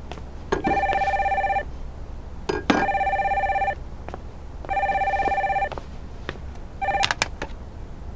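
Corded landline telephone ringing with an electronic warbling ring: three rings about a second long, two seconds apart, then a fourth cut short as the handset is picked up. A few sharp knocks and clicks fall between the rings.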